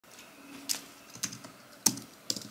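Typing on a low-profile computer keyboard: irregular keystrokes, with three sharper clicks about half a second apart and lighter taps between them.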